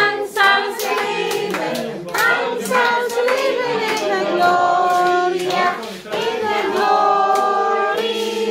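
A group of people, children among them, singing together with rhythmic hand clapping. The clapping is thickest in the first few seconds, and long held notes follow later.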